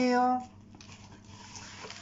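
A man's voice drawn out at the start, then faint handling noise with a small click as a product box is being opened.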